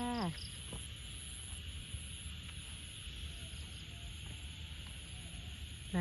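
Evening ambience after rain: a high, pulsing insect trill over an even hiss of a frog and insect chorus, with faint scattered frog calls.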